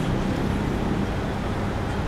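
Steady road traffic noise: an even rumble of passing vehicles on a city street.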